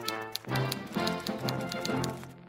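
News-bulletin style segment jingle: music with a fast, even clicking like a teletype running through it.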